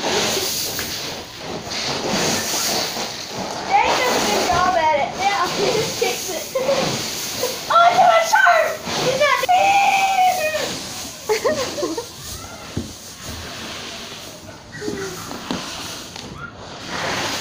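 Children's high-pitched voices calling out several times over the hiss of dry shelled corn kernels shifting around a child buried in the grain bin.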